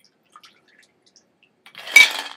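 A martini poured from a metal cocktail shaker into a glass: a faint thin trickle with a few drips, then near the end a loud clatter of ice rattling against the metal shaker.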